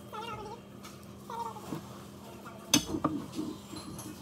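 Two short, high, wavering wordless vocal sounds in the first two seconds, then a sharp clink about three seconds in, louder than anything else.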